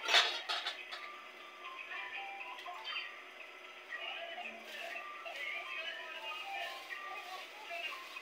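Stainless-steel bowls and plates clinking against each other as they are handled, sharpest in the first half second, over background music and voices.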